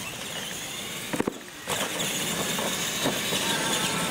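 Electric R/C monster trucks accelerating away down a dirt track, their motors whining over a hiss of tyre and gravel noise that grows louder after a couple of sharp knocks about a second in.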